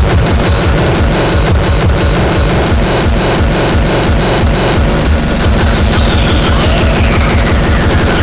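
Loud speedcore/industrial hardcore track: very fast, distorted kick drums pounding without a break. Over them a single high synth tone sweeps upward until about three seconds in, then glides steadily back down.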